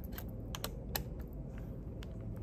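A few small, irregular plastic clicks and taps from fingers handling a Canon DSLR camera body and its buttons.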